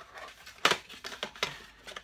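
A cardboard gift box being opened by hand, with a series of short clicks and knocks as the shower-gel bottles inside are handled. The sharpest knock comes about two-thirds of a second in.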